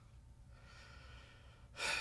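A faint breath in a pause between words, over a low, steady room hum. The voice comes back right at the end.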